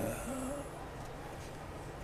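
A short pause in a man's talk: a brief low hum of voice just after it begins, then quiet studio room tone.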